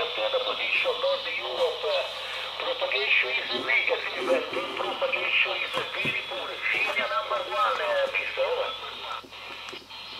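An amateur radio operator's voice received as single-sideband on the 20-metre band, 14.275 MHz, coming through the small speaker of a Quansheng UV-5R Plus handheld fitted with an HF receive mod. The voice is thin and narrow, with band hiss behind it, and fades weaker near the end.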